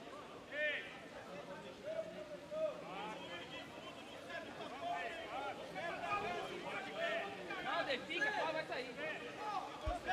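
Faint chatter of several men's voices on the pitch, with a few slightly louder calls.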